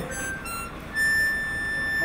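Small harmonica played: a couple of short high notes, then one long, steady high note held from about a second in.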